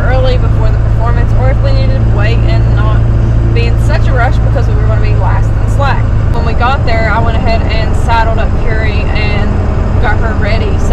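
A vehicle's engine and road drone inside the cabin, under voices talking. The steady low drone eases about six seconds in.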